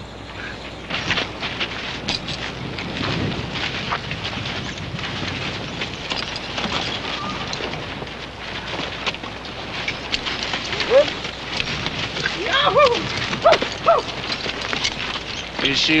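Horses moving on a dirt trail: an uneven run of soft hoof clops and tack clicks over a steady film-soundtrack hiss, with a few short voice-like sounds in the second half.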